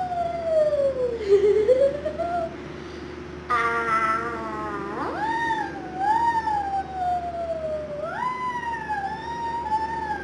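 A woman singing long, sliding notes straight into the blades of a running electric pedestal fan, each note rising sharply and then slowly gliding down, over the fan's steady hum and rush of air.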